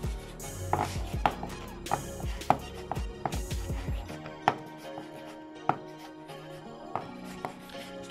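Chef's knife chopping fresh mint on a wooden cutting board: irregular knocks of the blade against the board, over background music.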